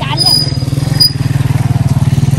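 A small engine running steadily at idle, a low drone with a fast, even pulse.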